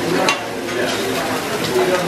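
Vegetables, tofu and eggs sizzling on a hot teppanyaki griddle, with one sharp tap about a quarter second in. Restaurant chatter can be heard behind.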